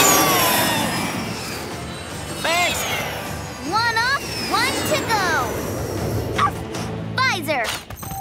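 Cartoon soundtrack: background music with a laugh at the start and short, wordless character exclamations several times through.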